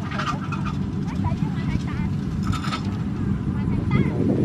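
A steady low rumble, with bird calls on top: two short rasping calls, one near the start and one about two and a half seconds in, and a few faint chirps.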